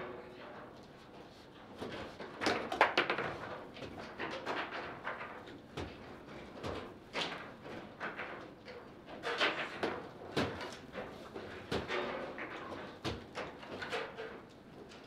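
Table football play on a Garlando table: irregular clacks and knocks as the ball is struck by the plastic figures and the steel rods are slid and spun. The loudest hit comes about three seconds in.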